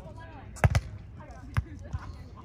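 Players' hands hitting a beach volleyball during a rally: a quick double slap just over half a second in and another sharp hit past halfway, with faint voices behind.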